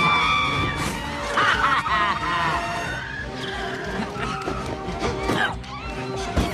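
Animated-film chase soundtrack: music over street traffic effects, with a long steady car tyre squeal at the start and a warbling squeal about a second and a half in.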